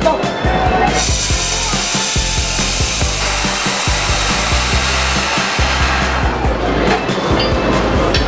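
A street vendor's steam-pressure cylinder venting: a sudden loud, even hiss of escaping steam begins about a second in, holds for about five seconds and then fades. Background music runs underneath.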